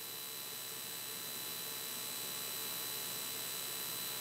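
Steady electronic hiss with faint, thin whine tones, the background noise of the aircraft's headset intercom audio feed while no one is transmitting; the piston engine itself does not come through.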